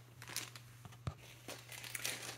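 Plastic zip-top bag of hazelnuts crinkling as it is handled, with a few faint clicks and a soft knock about a second in.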